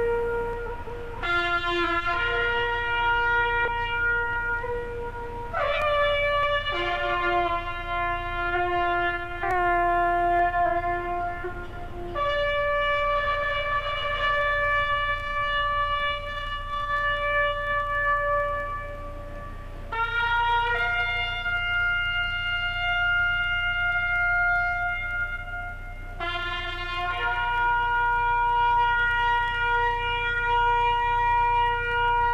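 A military band's brass and woodwinds playing slow ceremonial music in long held chords that change every few seconds.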